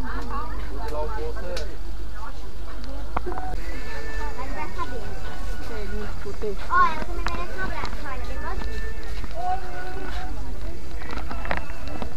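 Voices of shoppers and stallholders talking around a walking camera in a crowded street market, over a steady low rumble.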